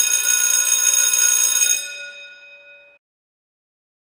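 A bright, bell-like chime that starts suddenly and rings on several steady high tones, the highest fading first, dying away over about three seconds.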